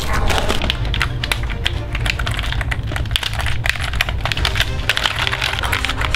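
Background music under a fast, dense run of sharp clicks and cracks.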